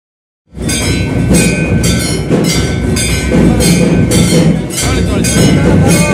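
Temple bells and drums sounding together during aarti worship: strikes about twice a second over a steady ringing, with voices among it. It starts abruptly about half a second in.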